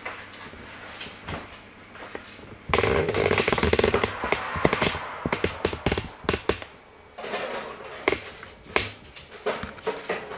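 Oven door opened with a loud rush about three seconds in, then a baking tray slid onto the oven's wire rack with a run of light metal clicks and knocks.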